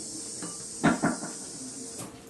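Steady hiss from a live electric guitar amplifier, with two short knocks close together about a second in.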